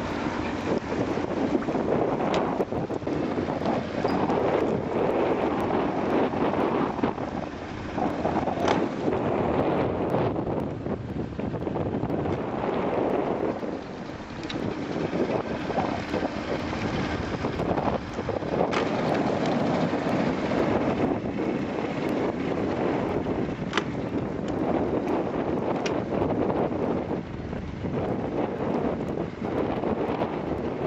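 Wind gusting on the microphone over open water, a rushing noise that swells and fades every few seconds, with a few faint sharp ticks.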